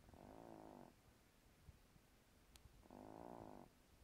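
An old cat (over 15) asleep on her back, snoring softly: two snores just under a second long, about three seconds apart, each a breath in, with quiet breathing between.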